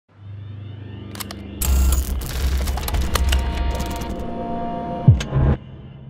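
Produced intro sound effect: a low hum, then about a second and a half in a loud rumble with rapid mechanical clicking and a few steady machine-like tones, a quick falling sweep near the end, and an abrupt stop.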